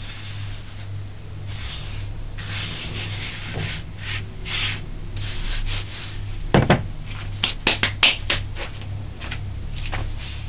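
Hands rubbing flour across a wooden cutting board in a series of sweeping strokes. About six and a half seconds in there is a heavy knock, followed by a few sharp clacks, as a wooden rolling pin is handled on the board. A steady low hum runs underneath.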